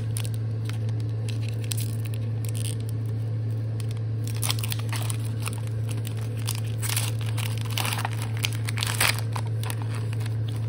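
Foil wrapper of a Pokémon trading card booster pack being torn open and crinkled by hand: scattered crackles at first, growing busier from about halfway through, with the sharpest crinkle near the end. A steady low hum runs underneath.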